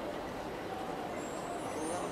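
Steady street background noise, an even hum of city sound, with no voice or music.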